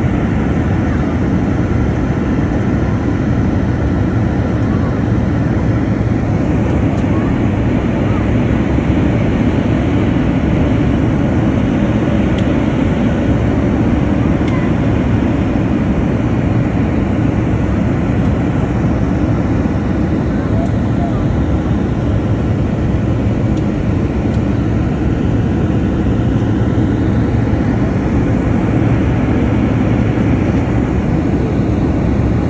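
Steady, loud cabin noise of a jet airliner in cruise flight: an even, deep rumble of engines and airflow heard from inside the cabin.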